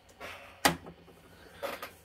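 A single sharp click or knock about two-thirds of a second in, with faint handling noise before and after it.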